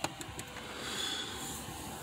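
Handling noise as a hand-held phone is moved about: a sharp click at the start and a few light ticks, then a steady low hiss.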